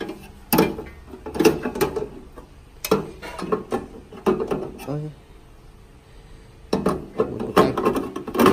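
Knocks and clicks of a bread machine's metal bread pan and its wire handle being handled and set down into the baking chamber: several separate knocks in the first half, a quieter stretch, then a few more near the end.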